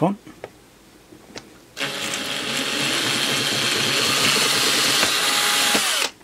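Cordless drill running as its bit bores through the moulded plastic front panel of a multimeter, starting about two seconds in and stopping just before the end. A steady motor whine that stays at one level while it runs.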